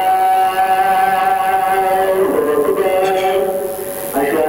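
A man's voice singing long, drawn-out notes of a mourning lament into a microphone over a PA: a single note held for about two seconds, then a shift to another held note about halfway through.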